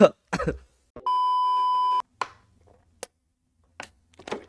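A steady high-pitched electronic beep, a single bleep lasting about a second, starting about a second in. A brief sharp click follows near the end.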